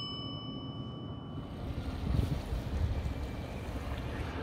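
The ringing tail of a small bell fades out over the first second and a half. Wind then rumbles unevenly on the microphone.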